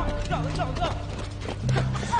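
Kicks thudding repeatedly into a person lying on the ground, with young men's voices shouting over the blows.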